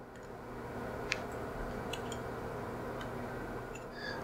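A few light ticks of multimeter probe tips touching the metal coil terminals of a magnetic contactor, the clearest about a second in, over a quiet steady room hum.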